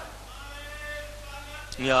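A man's voice lecturing in Urdu through a microphone. A short pause holds a faint drawn-out voice, and a loud spoken word starts near the end. A steady low hum runs underneath.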